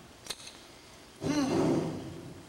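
A person's voice sounding briefly in the second half, after a faint click.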